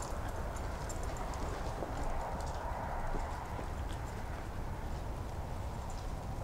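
Small moped engine idling with a low, steady putter.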